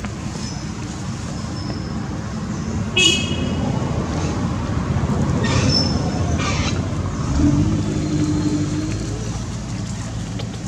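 Road traffic rumbling steadily, with a short high toot about three seconds in and a louder passing vehicle's hum from about seven to nine seconds.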